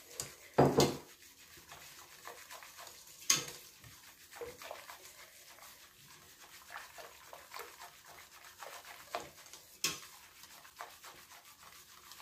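Wire whisk stirring a milk and cornflour custard mixture in a stainless steel pot as it heats to thicken, a run of soft repeated scraping strokes with a few sharper knocks of the whisk against the pot, the loudest about a second in.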